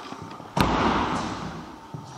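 A sudden loud thump about half a second in, trailing off over about a second.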